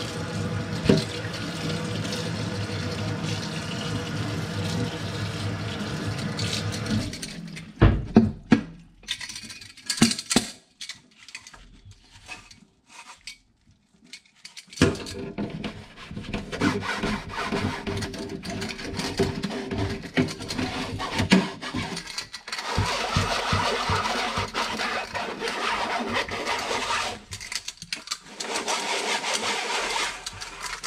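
Tap water running into a stainless steel sink while a stainless steel sprouter is rinsed and scrubbed by hand. The water stops about seven seconds in, leaving a few sharp metal knocks and a quieter spell, then runs again from about fifteen seconds in.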